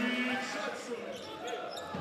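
Basketball game sound in an arena: a ball being dribbled on the hardwood court over a steady crowd murmur.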